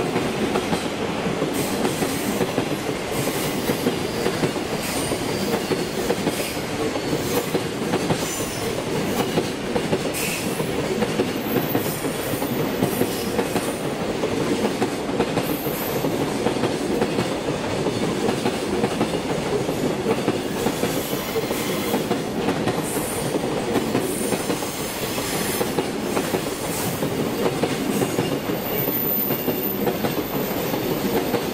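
Container freight train of flat wagons rolling steadily past, with a continuous rumble of wheels on rail and a clickety-clack over the rail joints. Several brief high-pitched wheel squeals come and go.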